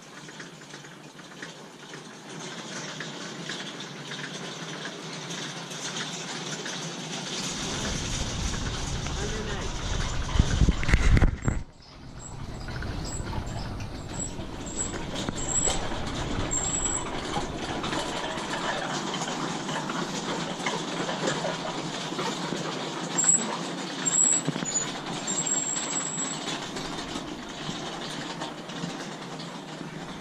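Wind buffeting the microphone, building into a strong gust about eight seconds in and cutting off suddenly a few seconds later. After that there is a steady outdoor hiss with a few faint, short, high-pitched chirps.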